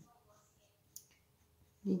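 A single short, sharp click about a second in, during a pause in a woman's talk, over faint room tone.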